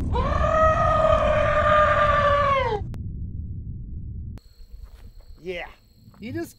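A long, high-pitched scream held for nearly three seconds, rising at the start and sliding down as it ends, over a deep rumble from the slow-motion impact footage. The rumble stops about four and a half seconds in, leaving outdoor quiet with insects buzzing.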